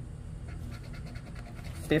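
A poker-chip-style scratcher rubbing the latex coating off a lottery scratch-off ticket: a faint, rapid rasping of short back-and-forth strokes.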